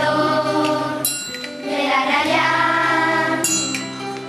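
Children's school choir singing a held, sustained melody together, with two bright, ringing percussive strikes, about a second in and again about three and a half seconds in.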